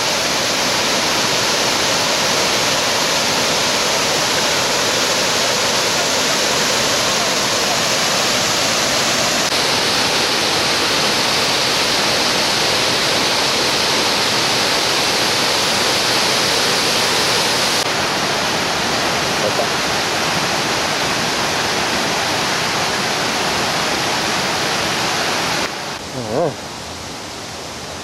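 Waterfall cascading down stepped rock ledges: a steady, dense rush of falling water that shifts slightly in tone twice. Near the end the rush drops abruptly to a quieter hiss.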